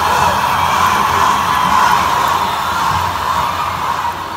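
Large concert audience cheering and screaming, a loud sustained roar that starts to die down near the end.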